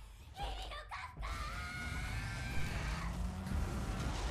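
A monster's drawn-out screaming cry from an anime soundtrack, starting about a second in and held for a couple of seconds over a low rumble that builds.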